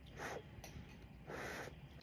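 A person slurping spicy noodles off a fork, two short, soft slurps about a second apart.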